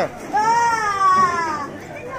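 One long, high-pitched human cry lasting over a second, its pitch rising a little and then falling away.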